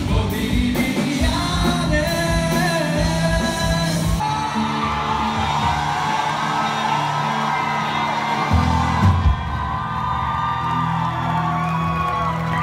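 Live band music with amplified singing and whoops from a large crowd. The drums stop about four seconds in, leaving bass and long held sung notes.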